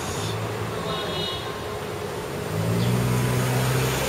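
Street traffic noise with a motor vehicle's low engine hum, which fades and then comes back louder about two-thirds of the way through.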